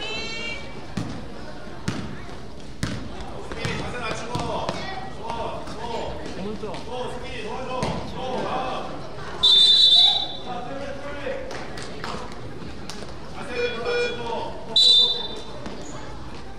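Basketball bouncing on a gym floor among shouting voices, with a referee's whistle blown loud: once for under a second about nine and a half seconds in, and briefly again near the end.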